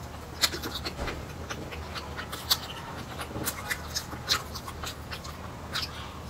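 Close-miked chewing with wet lip smacks and mouth clicks at irregular intervals, the sharpest about half a second in, midway and a little past four seconds.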